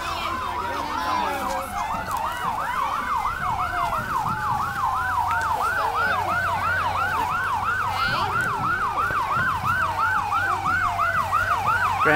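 Emergency-vehicle siren in a fast yelp, sweeping up and down about three times a second, with a second slower wailing tone falling steadily beneath it.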